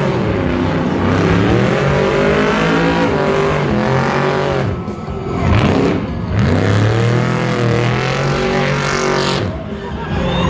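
Off-road trophy truck doing donuts on asphalt, its engine revving up and down over and over as the rear tires spin. The revs drop briefly around five seconds in and again just before the end.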